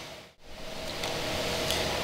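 Steady background room noise, an even hiss with no distinct tones, broken by a short dropout about a third of a second in where the audio is cut.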